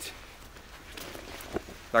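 A pause in a man's speech: faint outdoor background with one short tap about one and a half seconds in, then his voice comes back right at the end.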